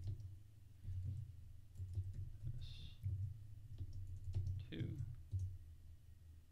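Computer keyboard typing: irregular key clicks with soft low thuds as a short line of code is typed.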